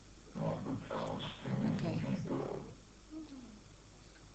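A voice saying a few indistinct words for about two and a half seconds, followed by a short falling vocal sound.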